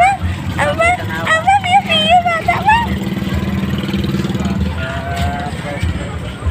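A baby's high-pitched babbling and squeals, bending up and down, for the first half. Then a small motorcycle engine runs past with a steady low hum for about two seconds.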